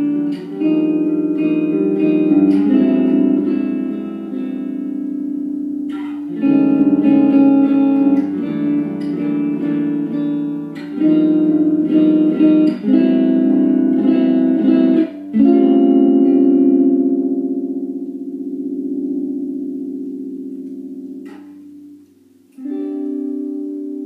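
Electric guitar played through a small practice amp: strummed chords in short phrases, with brief breaks between them. Past the middle a chord is left ringing and slowly fades for several seconds before a new chord is struck near the end.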